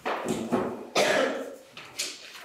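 A person coughing, three coughs in quick succession within about the first second.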